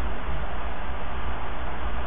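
Steady hiss with a low hum underneath: the recording's constant background noise, with no clicks or other events standing out.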